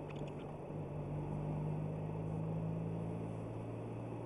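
Car engine and tyre noise heard from inside the cabin: a steady low engine hum over road rumble, growing a little louder in the middle as the car drives on.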